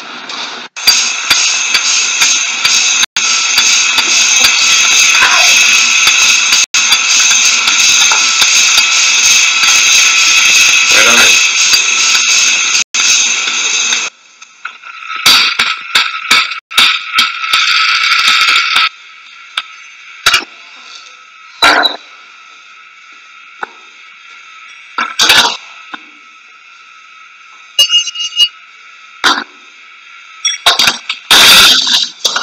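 Tinny, thin-sounding music played from a phone's small speaker, held steady for about the first half and then breaking off. After that comes a low hiss with a few sharp knocks.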